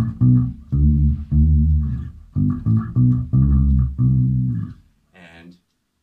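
Four-string electric bass played through an amplifier: a simple linear line of about a dozen separate low notes, stopping shortly before the end.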